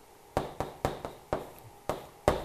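A piece of chalk tapping against a chalkboard: five short, sharp taps at uneven intervals.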